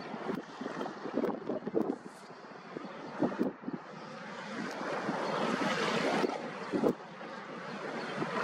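Wind on the microphone over small waves washing across a shallow tidal islet. The sound is an uneven rush that drops quieter a couple of seconds in, then builds again, with a few short louder peaks.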